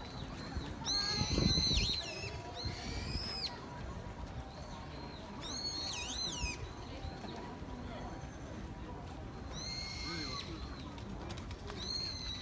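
Brown-eared bulbul giving loud, shrill whistled calls in four bouts of about a second each, the notes swooping down in pitch. There is a brief low rumble about a second in.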